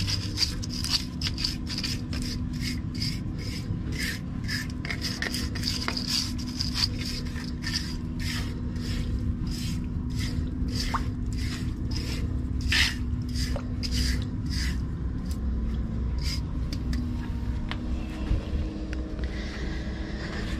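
A thin metal scraper blade scraping wet grime and old residue off the concrete around a roof floor drain, in quick repeated strokes about twice a second that stop a few seconds before the end. A steady low hum runs underneath.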